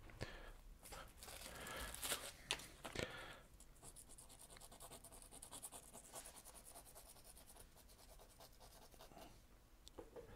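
Graphite pencil scratching on paper in short strokes, a few firmer marks in the first three seconds, then a fast run of light, rapid flicks for a few seconds from about four seconds in.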